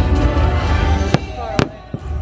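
Fireworks show: aerial shells bursting over loud show music, with two sharp bangs about half a second apart past the middle, the second the louder.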